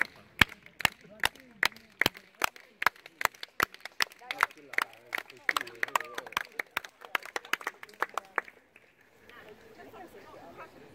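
Hands clapping in a steady beat, about two and a half claps a second, the beat keeping time with dogs gaiting around the show ring. About four seconds in, more clappers join and the claps grow denser and less regular, then stop near the end. Voices murmur faintly between the claps.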